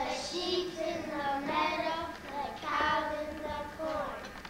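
Young children singing together without accompaniment, holding and gliding between notes.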